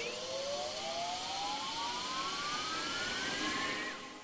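NetEnt Stickers video slot's reel-spin sound effect during a Sticky Spin respin: a whine that climbs steadily in pitch over a hiss and cuts off near the end as the reels stop.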